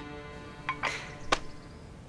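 A soft swish about a second in, followed by a sharp click, over faint lingering music.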